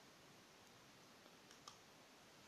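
Near silence: faint room tone, with a couple of small clicks about one and a half seconds in.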